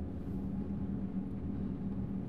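A steady low hum of machinery or ventilation, running evenly with no knocks or clicks.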